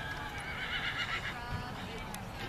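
A horse whinnies: one long, wavering high call that ends about a second and a half in.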